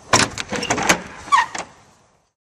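A quick run of loud knocks and clatter inside a box truck's cargo body, with a brief squeak near the end, then a sudden cut-off.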